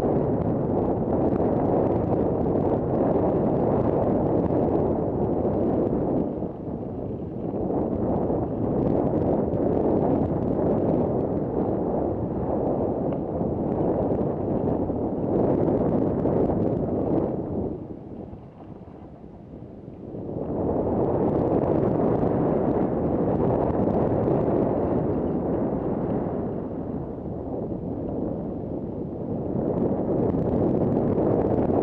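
Wind rushing over a helmet-mounted camera's microphone while riding fast down a dirt singletrack, a steady low rumbling noise. It drops away for a couple of seconds about two-thirds of the way through, then comes back.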